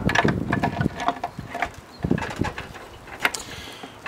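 Irregular light metal clicks and knocks of a Gravely tractor's high-low planetary gear assembly being worked by hand against the transmission housing to line up its gears and pins, with a sharper click a little past three seconds.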